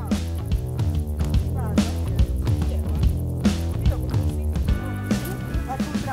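Instrumental background music with held notes.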